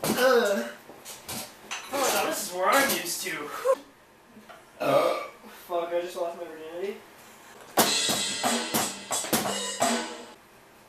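Wordless voice sounds that rise and fall in pitch, with a few scattered drum hits, then a rapid flurry of drum and cymbal hits on an electronic drum kit about eight seconds in, lasting about a second and a half.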